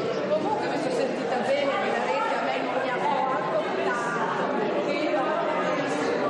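Chatter of many people talking at once, with overlapping conversations and no single voice standing out.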